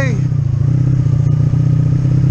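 1985 Honda V65 Sabre's 1100cc V4 engine running at a steady, unchanging pitch as the motorcycle rolls along at low speed.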